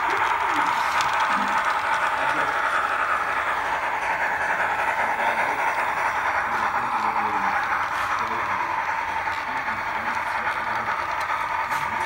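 Brass model steam locomotive of a Canadian Pacific P2 2-8-2 Mikado running along layout track: a steady whirring noise of its motor, gearing and wheels on the rails, with faint voices in the background.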